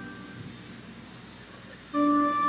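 A pause between organ phrases: the low, reverberant hush of a large church, with the last organ chord's echo dying away at the start and a faint steady high tone throughout. The pipe organ enters again right at the end.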